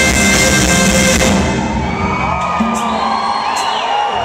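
Live band playing at full volume, cutting back about a second and a half in to a low held note, while the concert crowd cheers and whoops.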